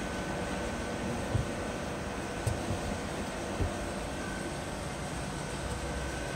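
Steady machinery hum with a faint high whine running through it, broken by three soft low thumps about a second apart.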